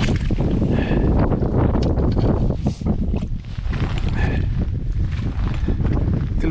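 Wind buffeting the microphone in a steady low rumble, with scattered short knocks and clicks.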